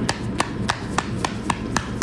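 A quick run of evenly spaced sharp taps or claps, about four a second.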